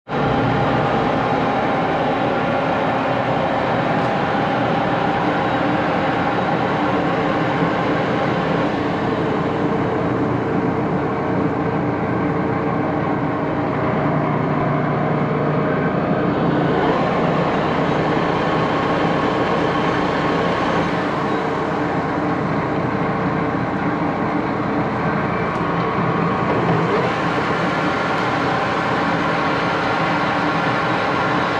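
Axelson engine lathe's geared headstock running steadily at speed, with a large faceplate spinning on the spindle and no cutting under way: an even gear-and-motor whir made up of several steady tones.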